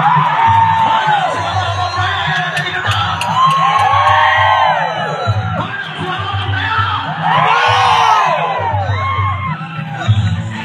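A large crowd of men whooping and shouting, many overlapping cries rising and falling in pitch, over music with a pulsing low beat.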